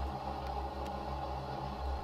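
A steady low hum with a faint hiss and no distinct events.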